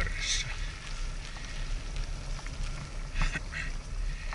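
Riding noise from a recumbent bicycle on a paved path: a steady low rumble of wind on the handlebar camera's microphone and tyres rolling, with small clicks and rattles and two short hisses, about a third of a second in and again after three seconds.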